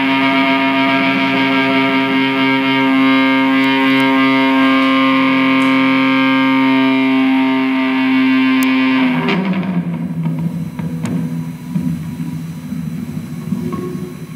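Prepared electric guitar played through effects: a loud, dense drone of many steady held tones. About nine seconds in, the drone breaks off into a quieter, rougher low sound that wavers in level.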